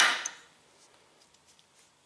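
RCBS Uniflow powder measure throwing a charge: a short hiss of smokeless powder pouring through the drop tube into the pan, fading out within about half a second. A few faint ticks follow.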